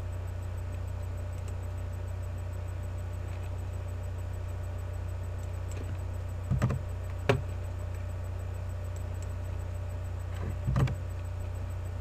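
A steady low electrical hum on the recording, with a few short clicks and taps from the computer's mouse and keyboard as lighting-effect values are set, clustered in the second half.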